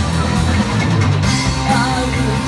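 Live rock band playing loud and steady: distorted electric guitars, electric bass and drum kit together.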